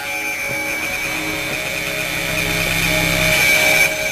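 Tense background music underscore: a held high note over lower sustained notes, slowly building in loudness.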